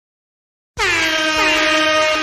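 Air horn sound effect, as used in dancehall DJ mixes, coming in about three-quarters of a second in as one long, loud, steady blast that bends down slightly at its start.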